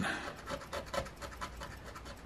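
Coin scraping the coating off a scratch-off lottery ticket: rapid, repeated scratching strokes.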